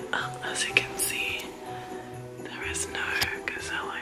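A woman whispering, with background music playing underneath.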